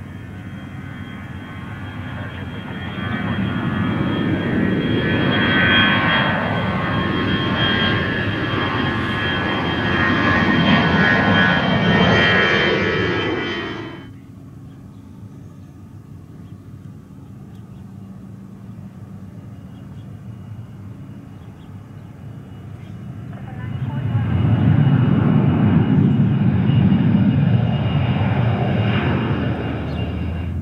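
Twin-engine jet airliner flying low overhead on approach with its gear down: engine roar with a high whine, swelling from about three seconds in, then cutting off abruptly midway. After a quieter stretch, a second jet airliner's engine roar rises about three-quarters of the way through.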